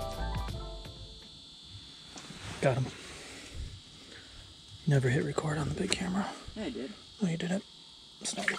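A music track fades out in the first second. After that, quiet indistinct voices come and go, about three seconds in and again from five to seven and a half seconds, over a faint steady high-pitched whine.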